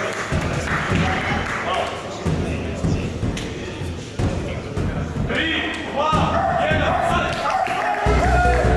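People talking in a large gym hall, with several dull low thuds. Music comes in during the last couple of seconds.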